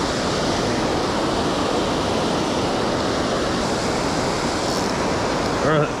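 Water pouring over a low dam spillway close by: a steady rush of white water.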